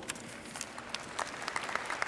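Large congregation applauding, many hands clapping at once in a steady patter.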